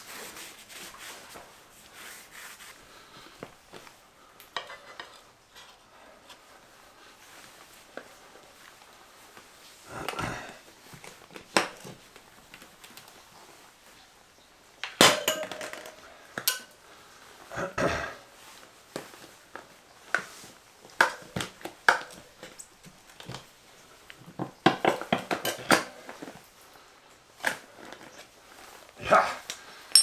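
Metal tyre levers knocking and scraping against a spoked motorcycle wheel's rim as a knobby tyre is worked onto it by hand. Scattered clanks and rubbing, sparse at first and busier and louder from about halfway.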